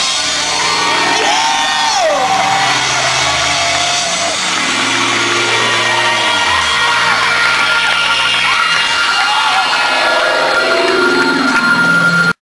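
A rock band's electric guitars and bass hold long, sustained notes with sliding pitches and feedback, with crowd shouts and whoops mixed in. The notes change every couple of seconds, and a steady high feedback tone rings near the end.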